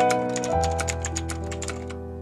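Rapid keyboard-typing clicks over sustained, steady instrumental chords. The clicks come in quick runs, several a second, and thin out near the end.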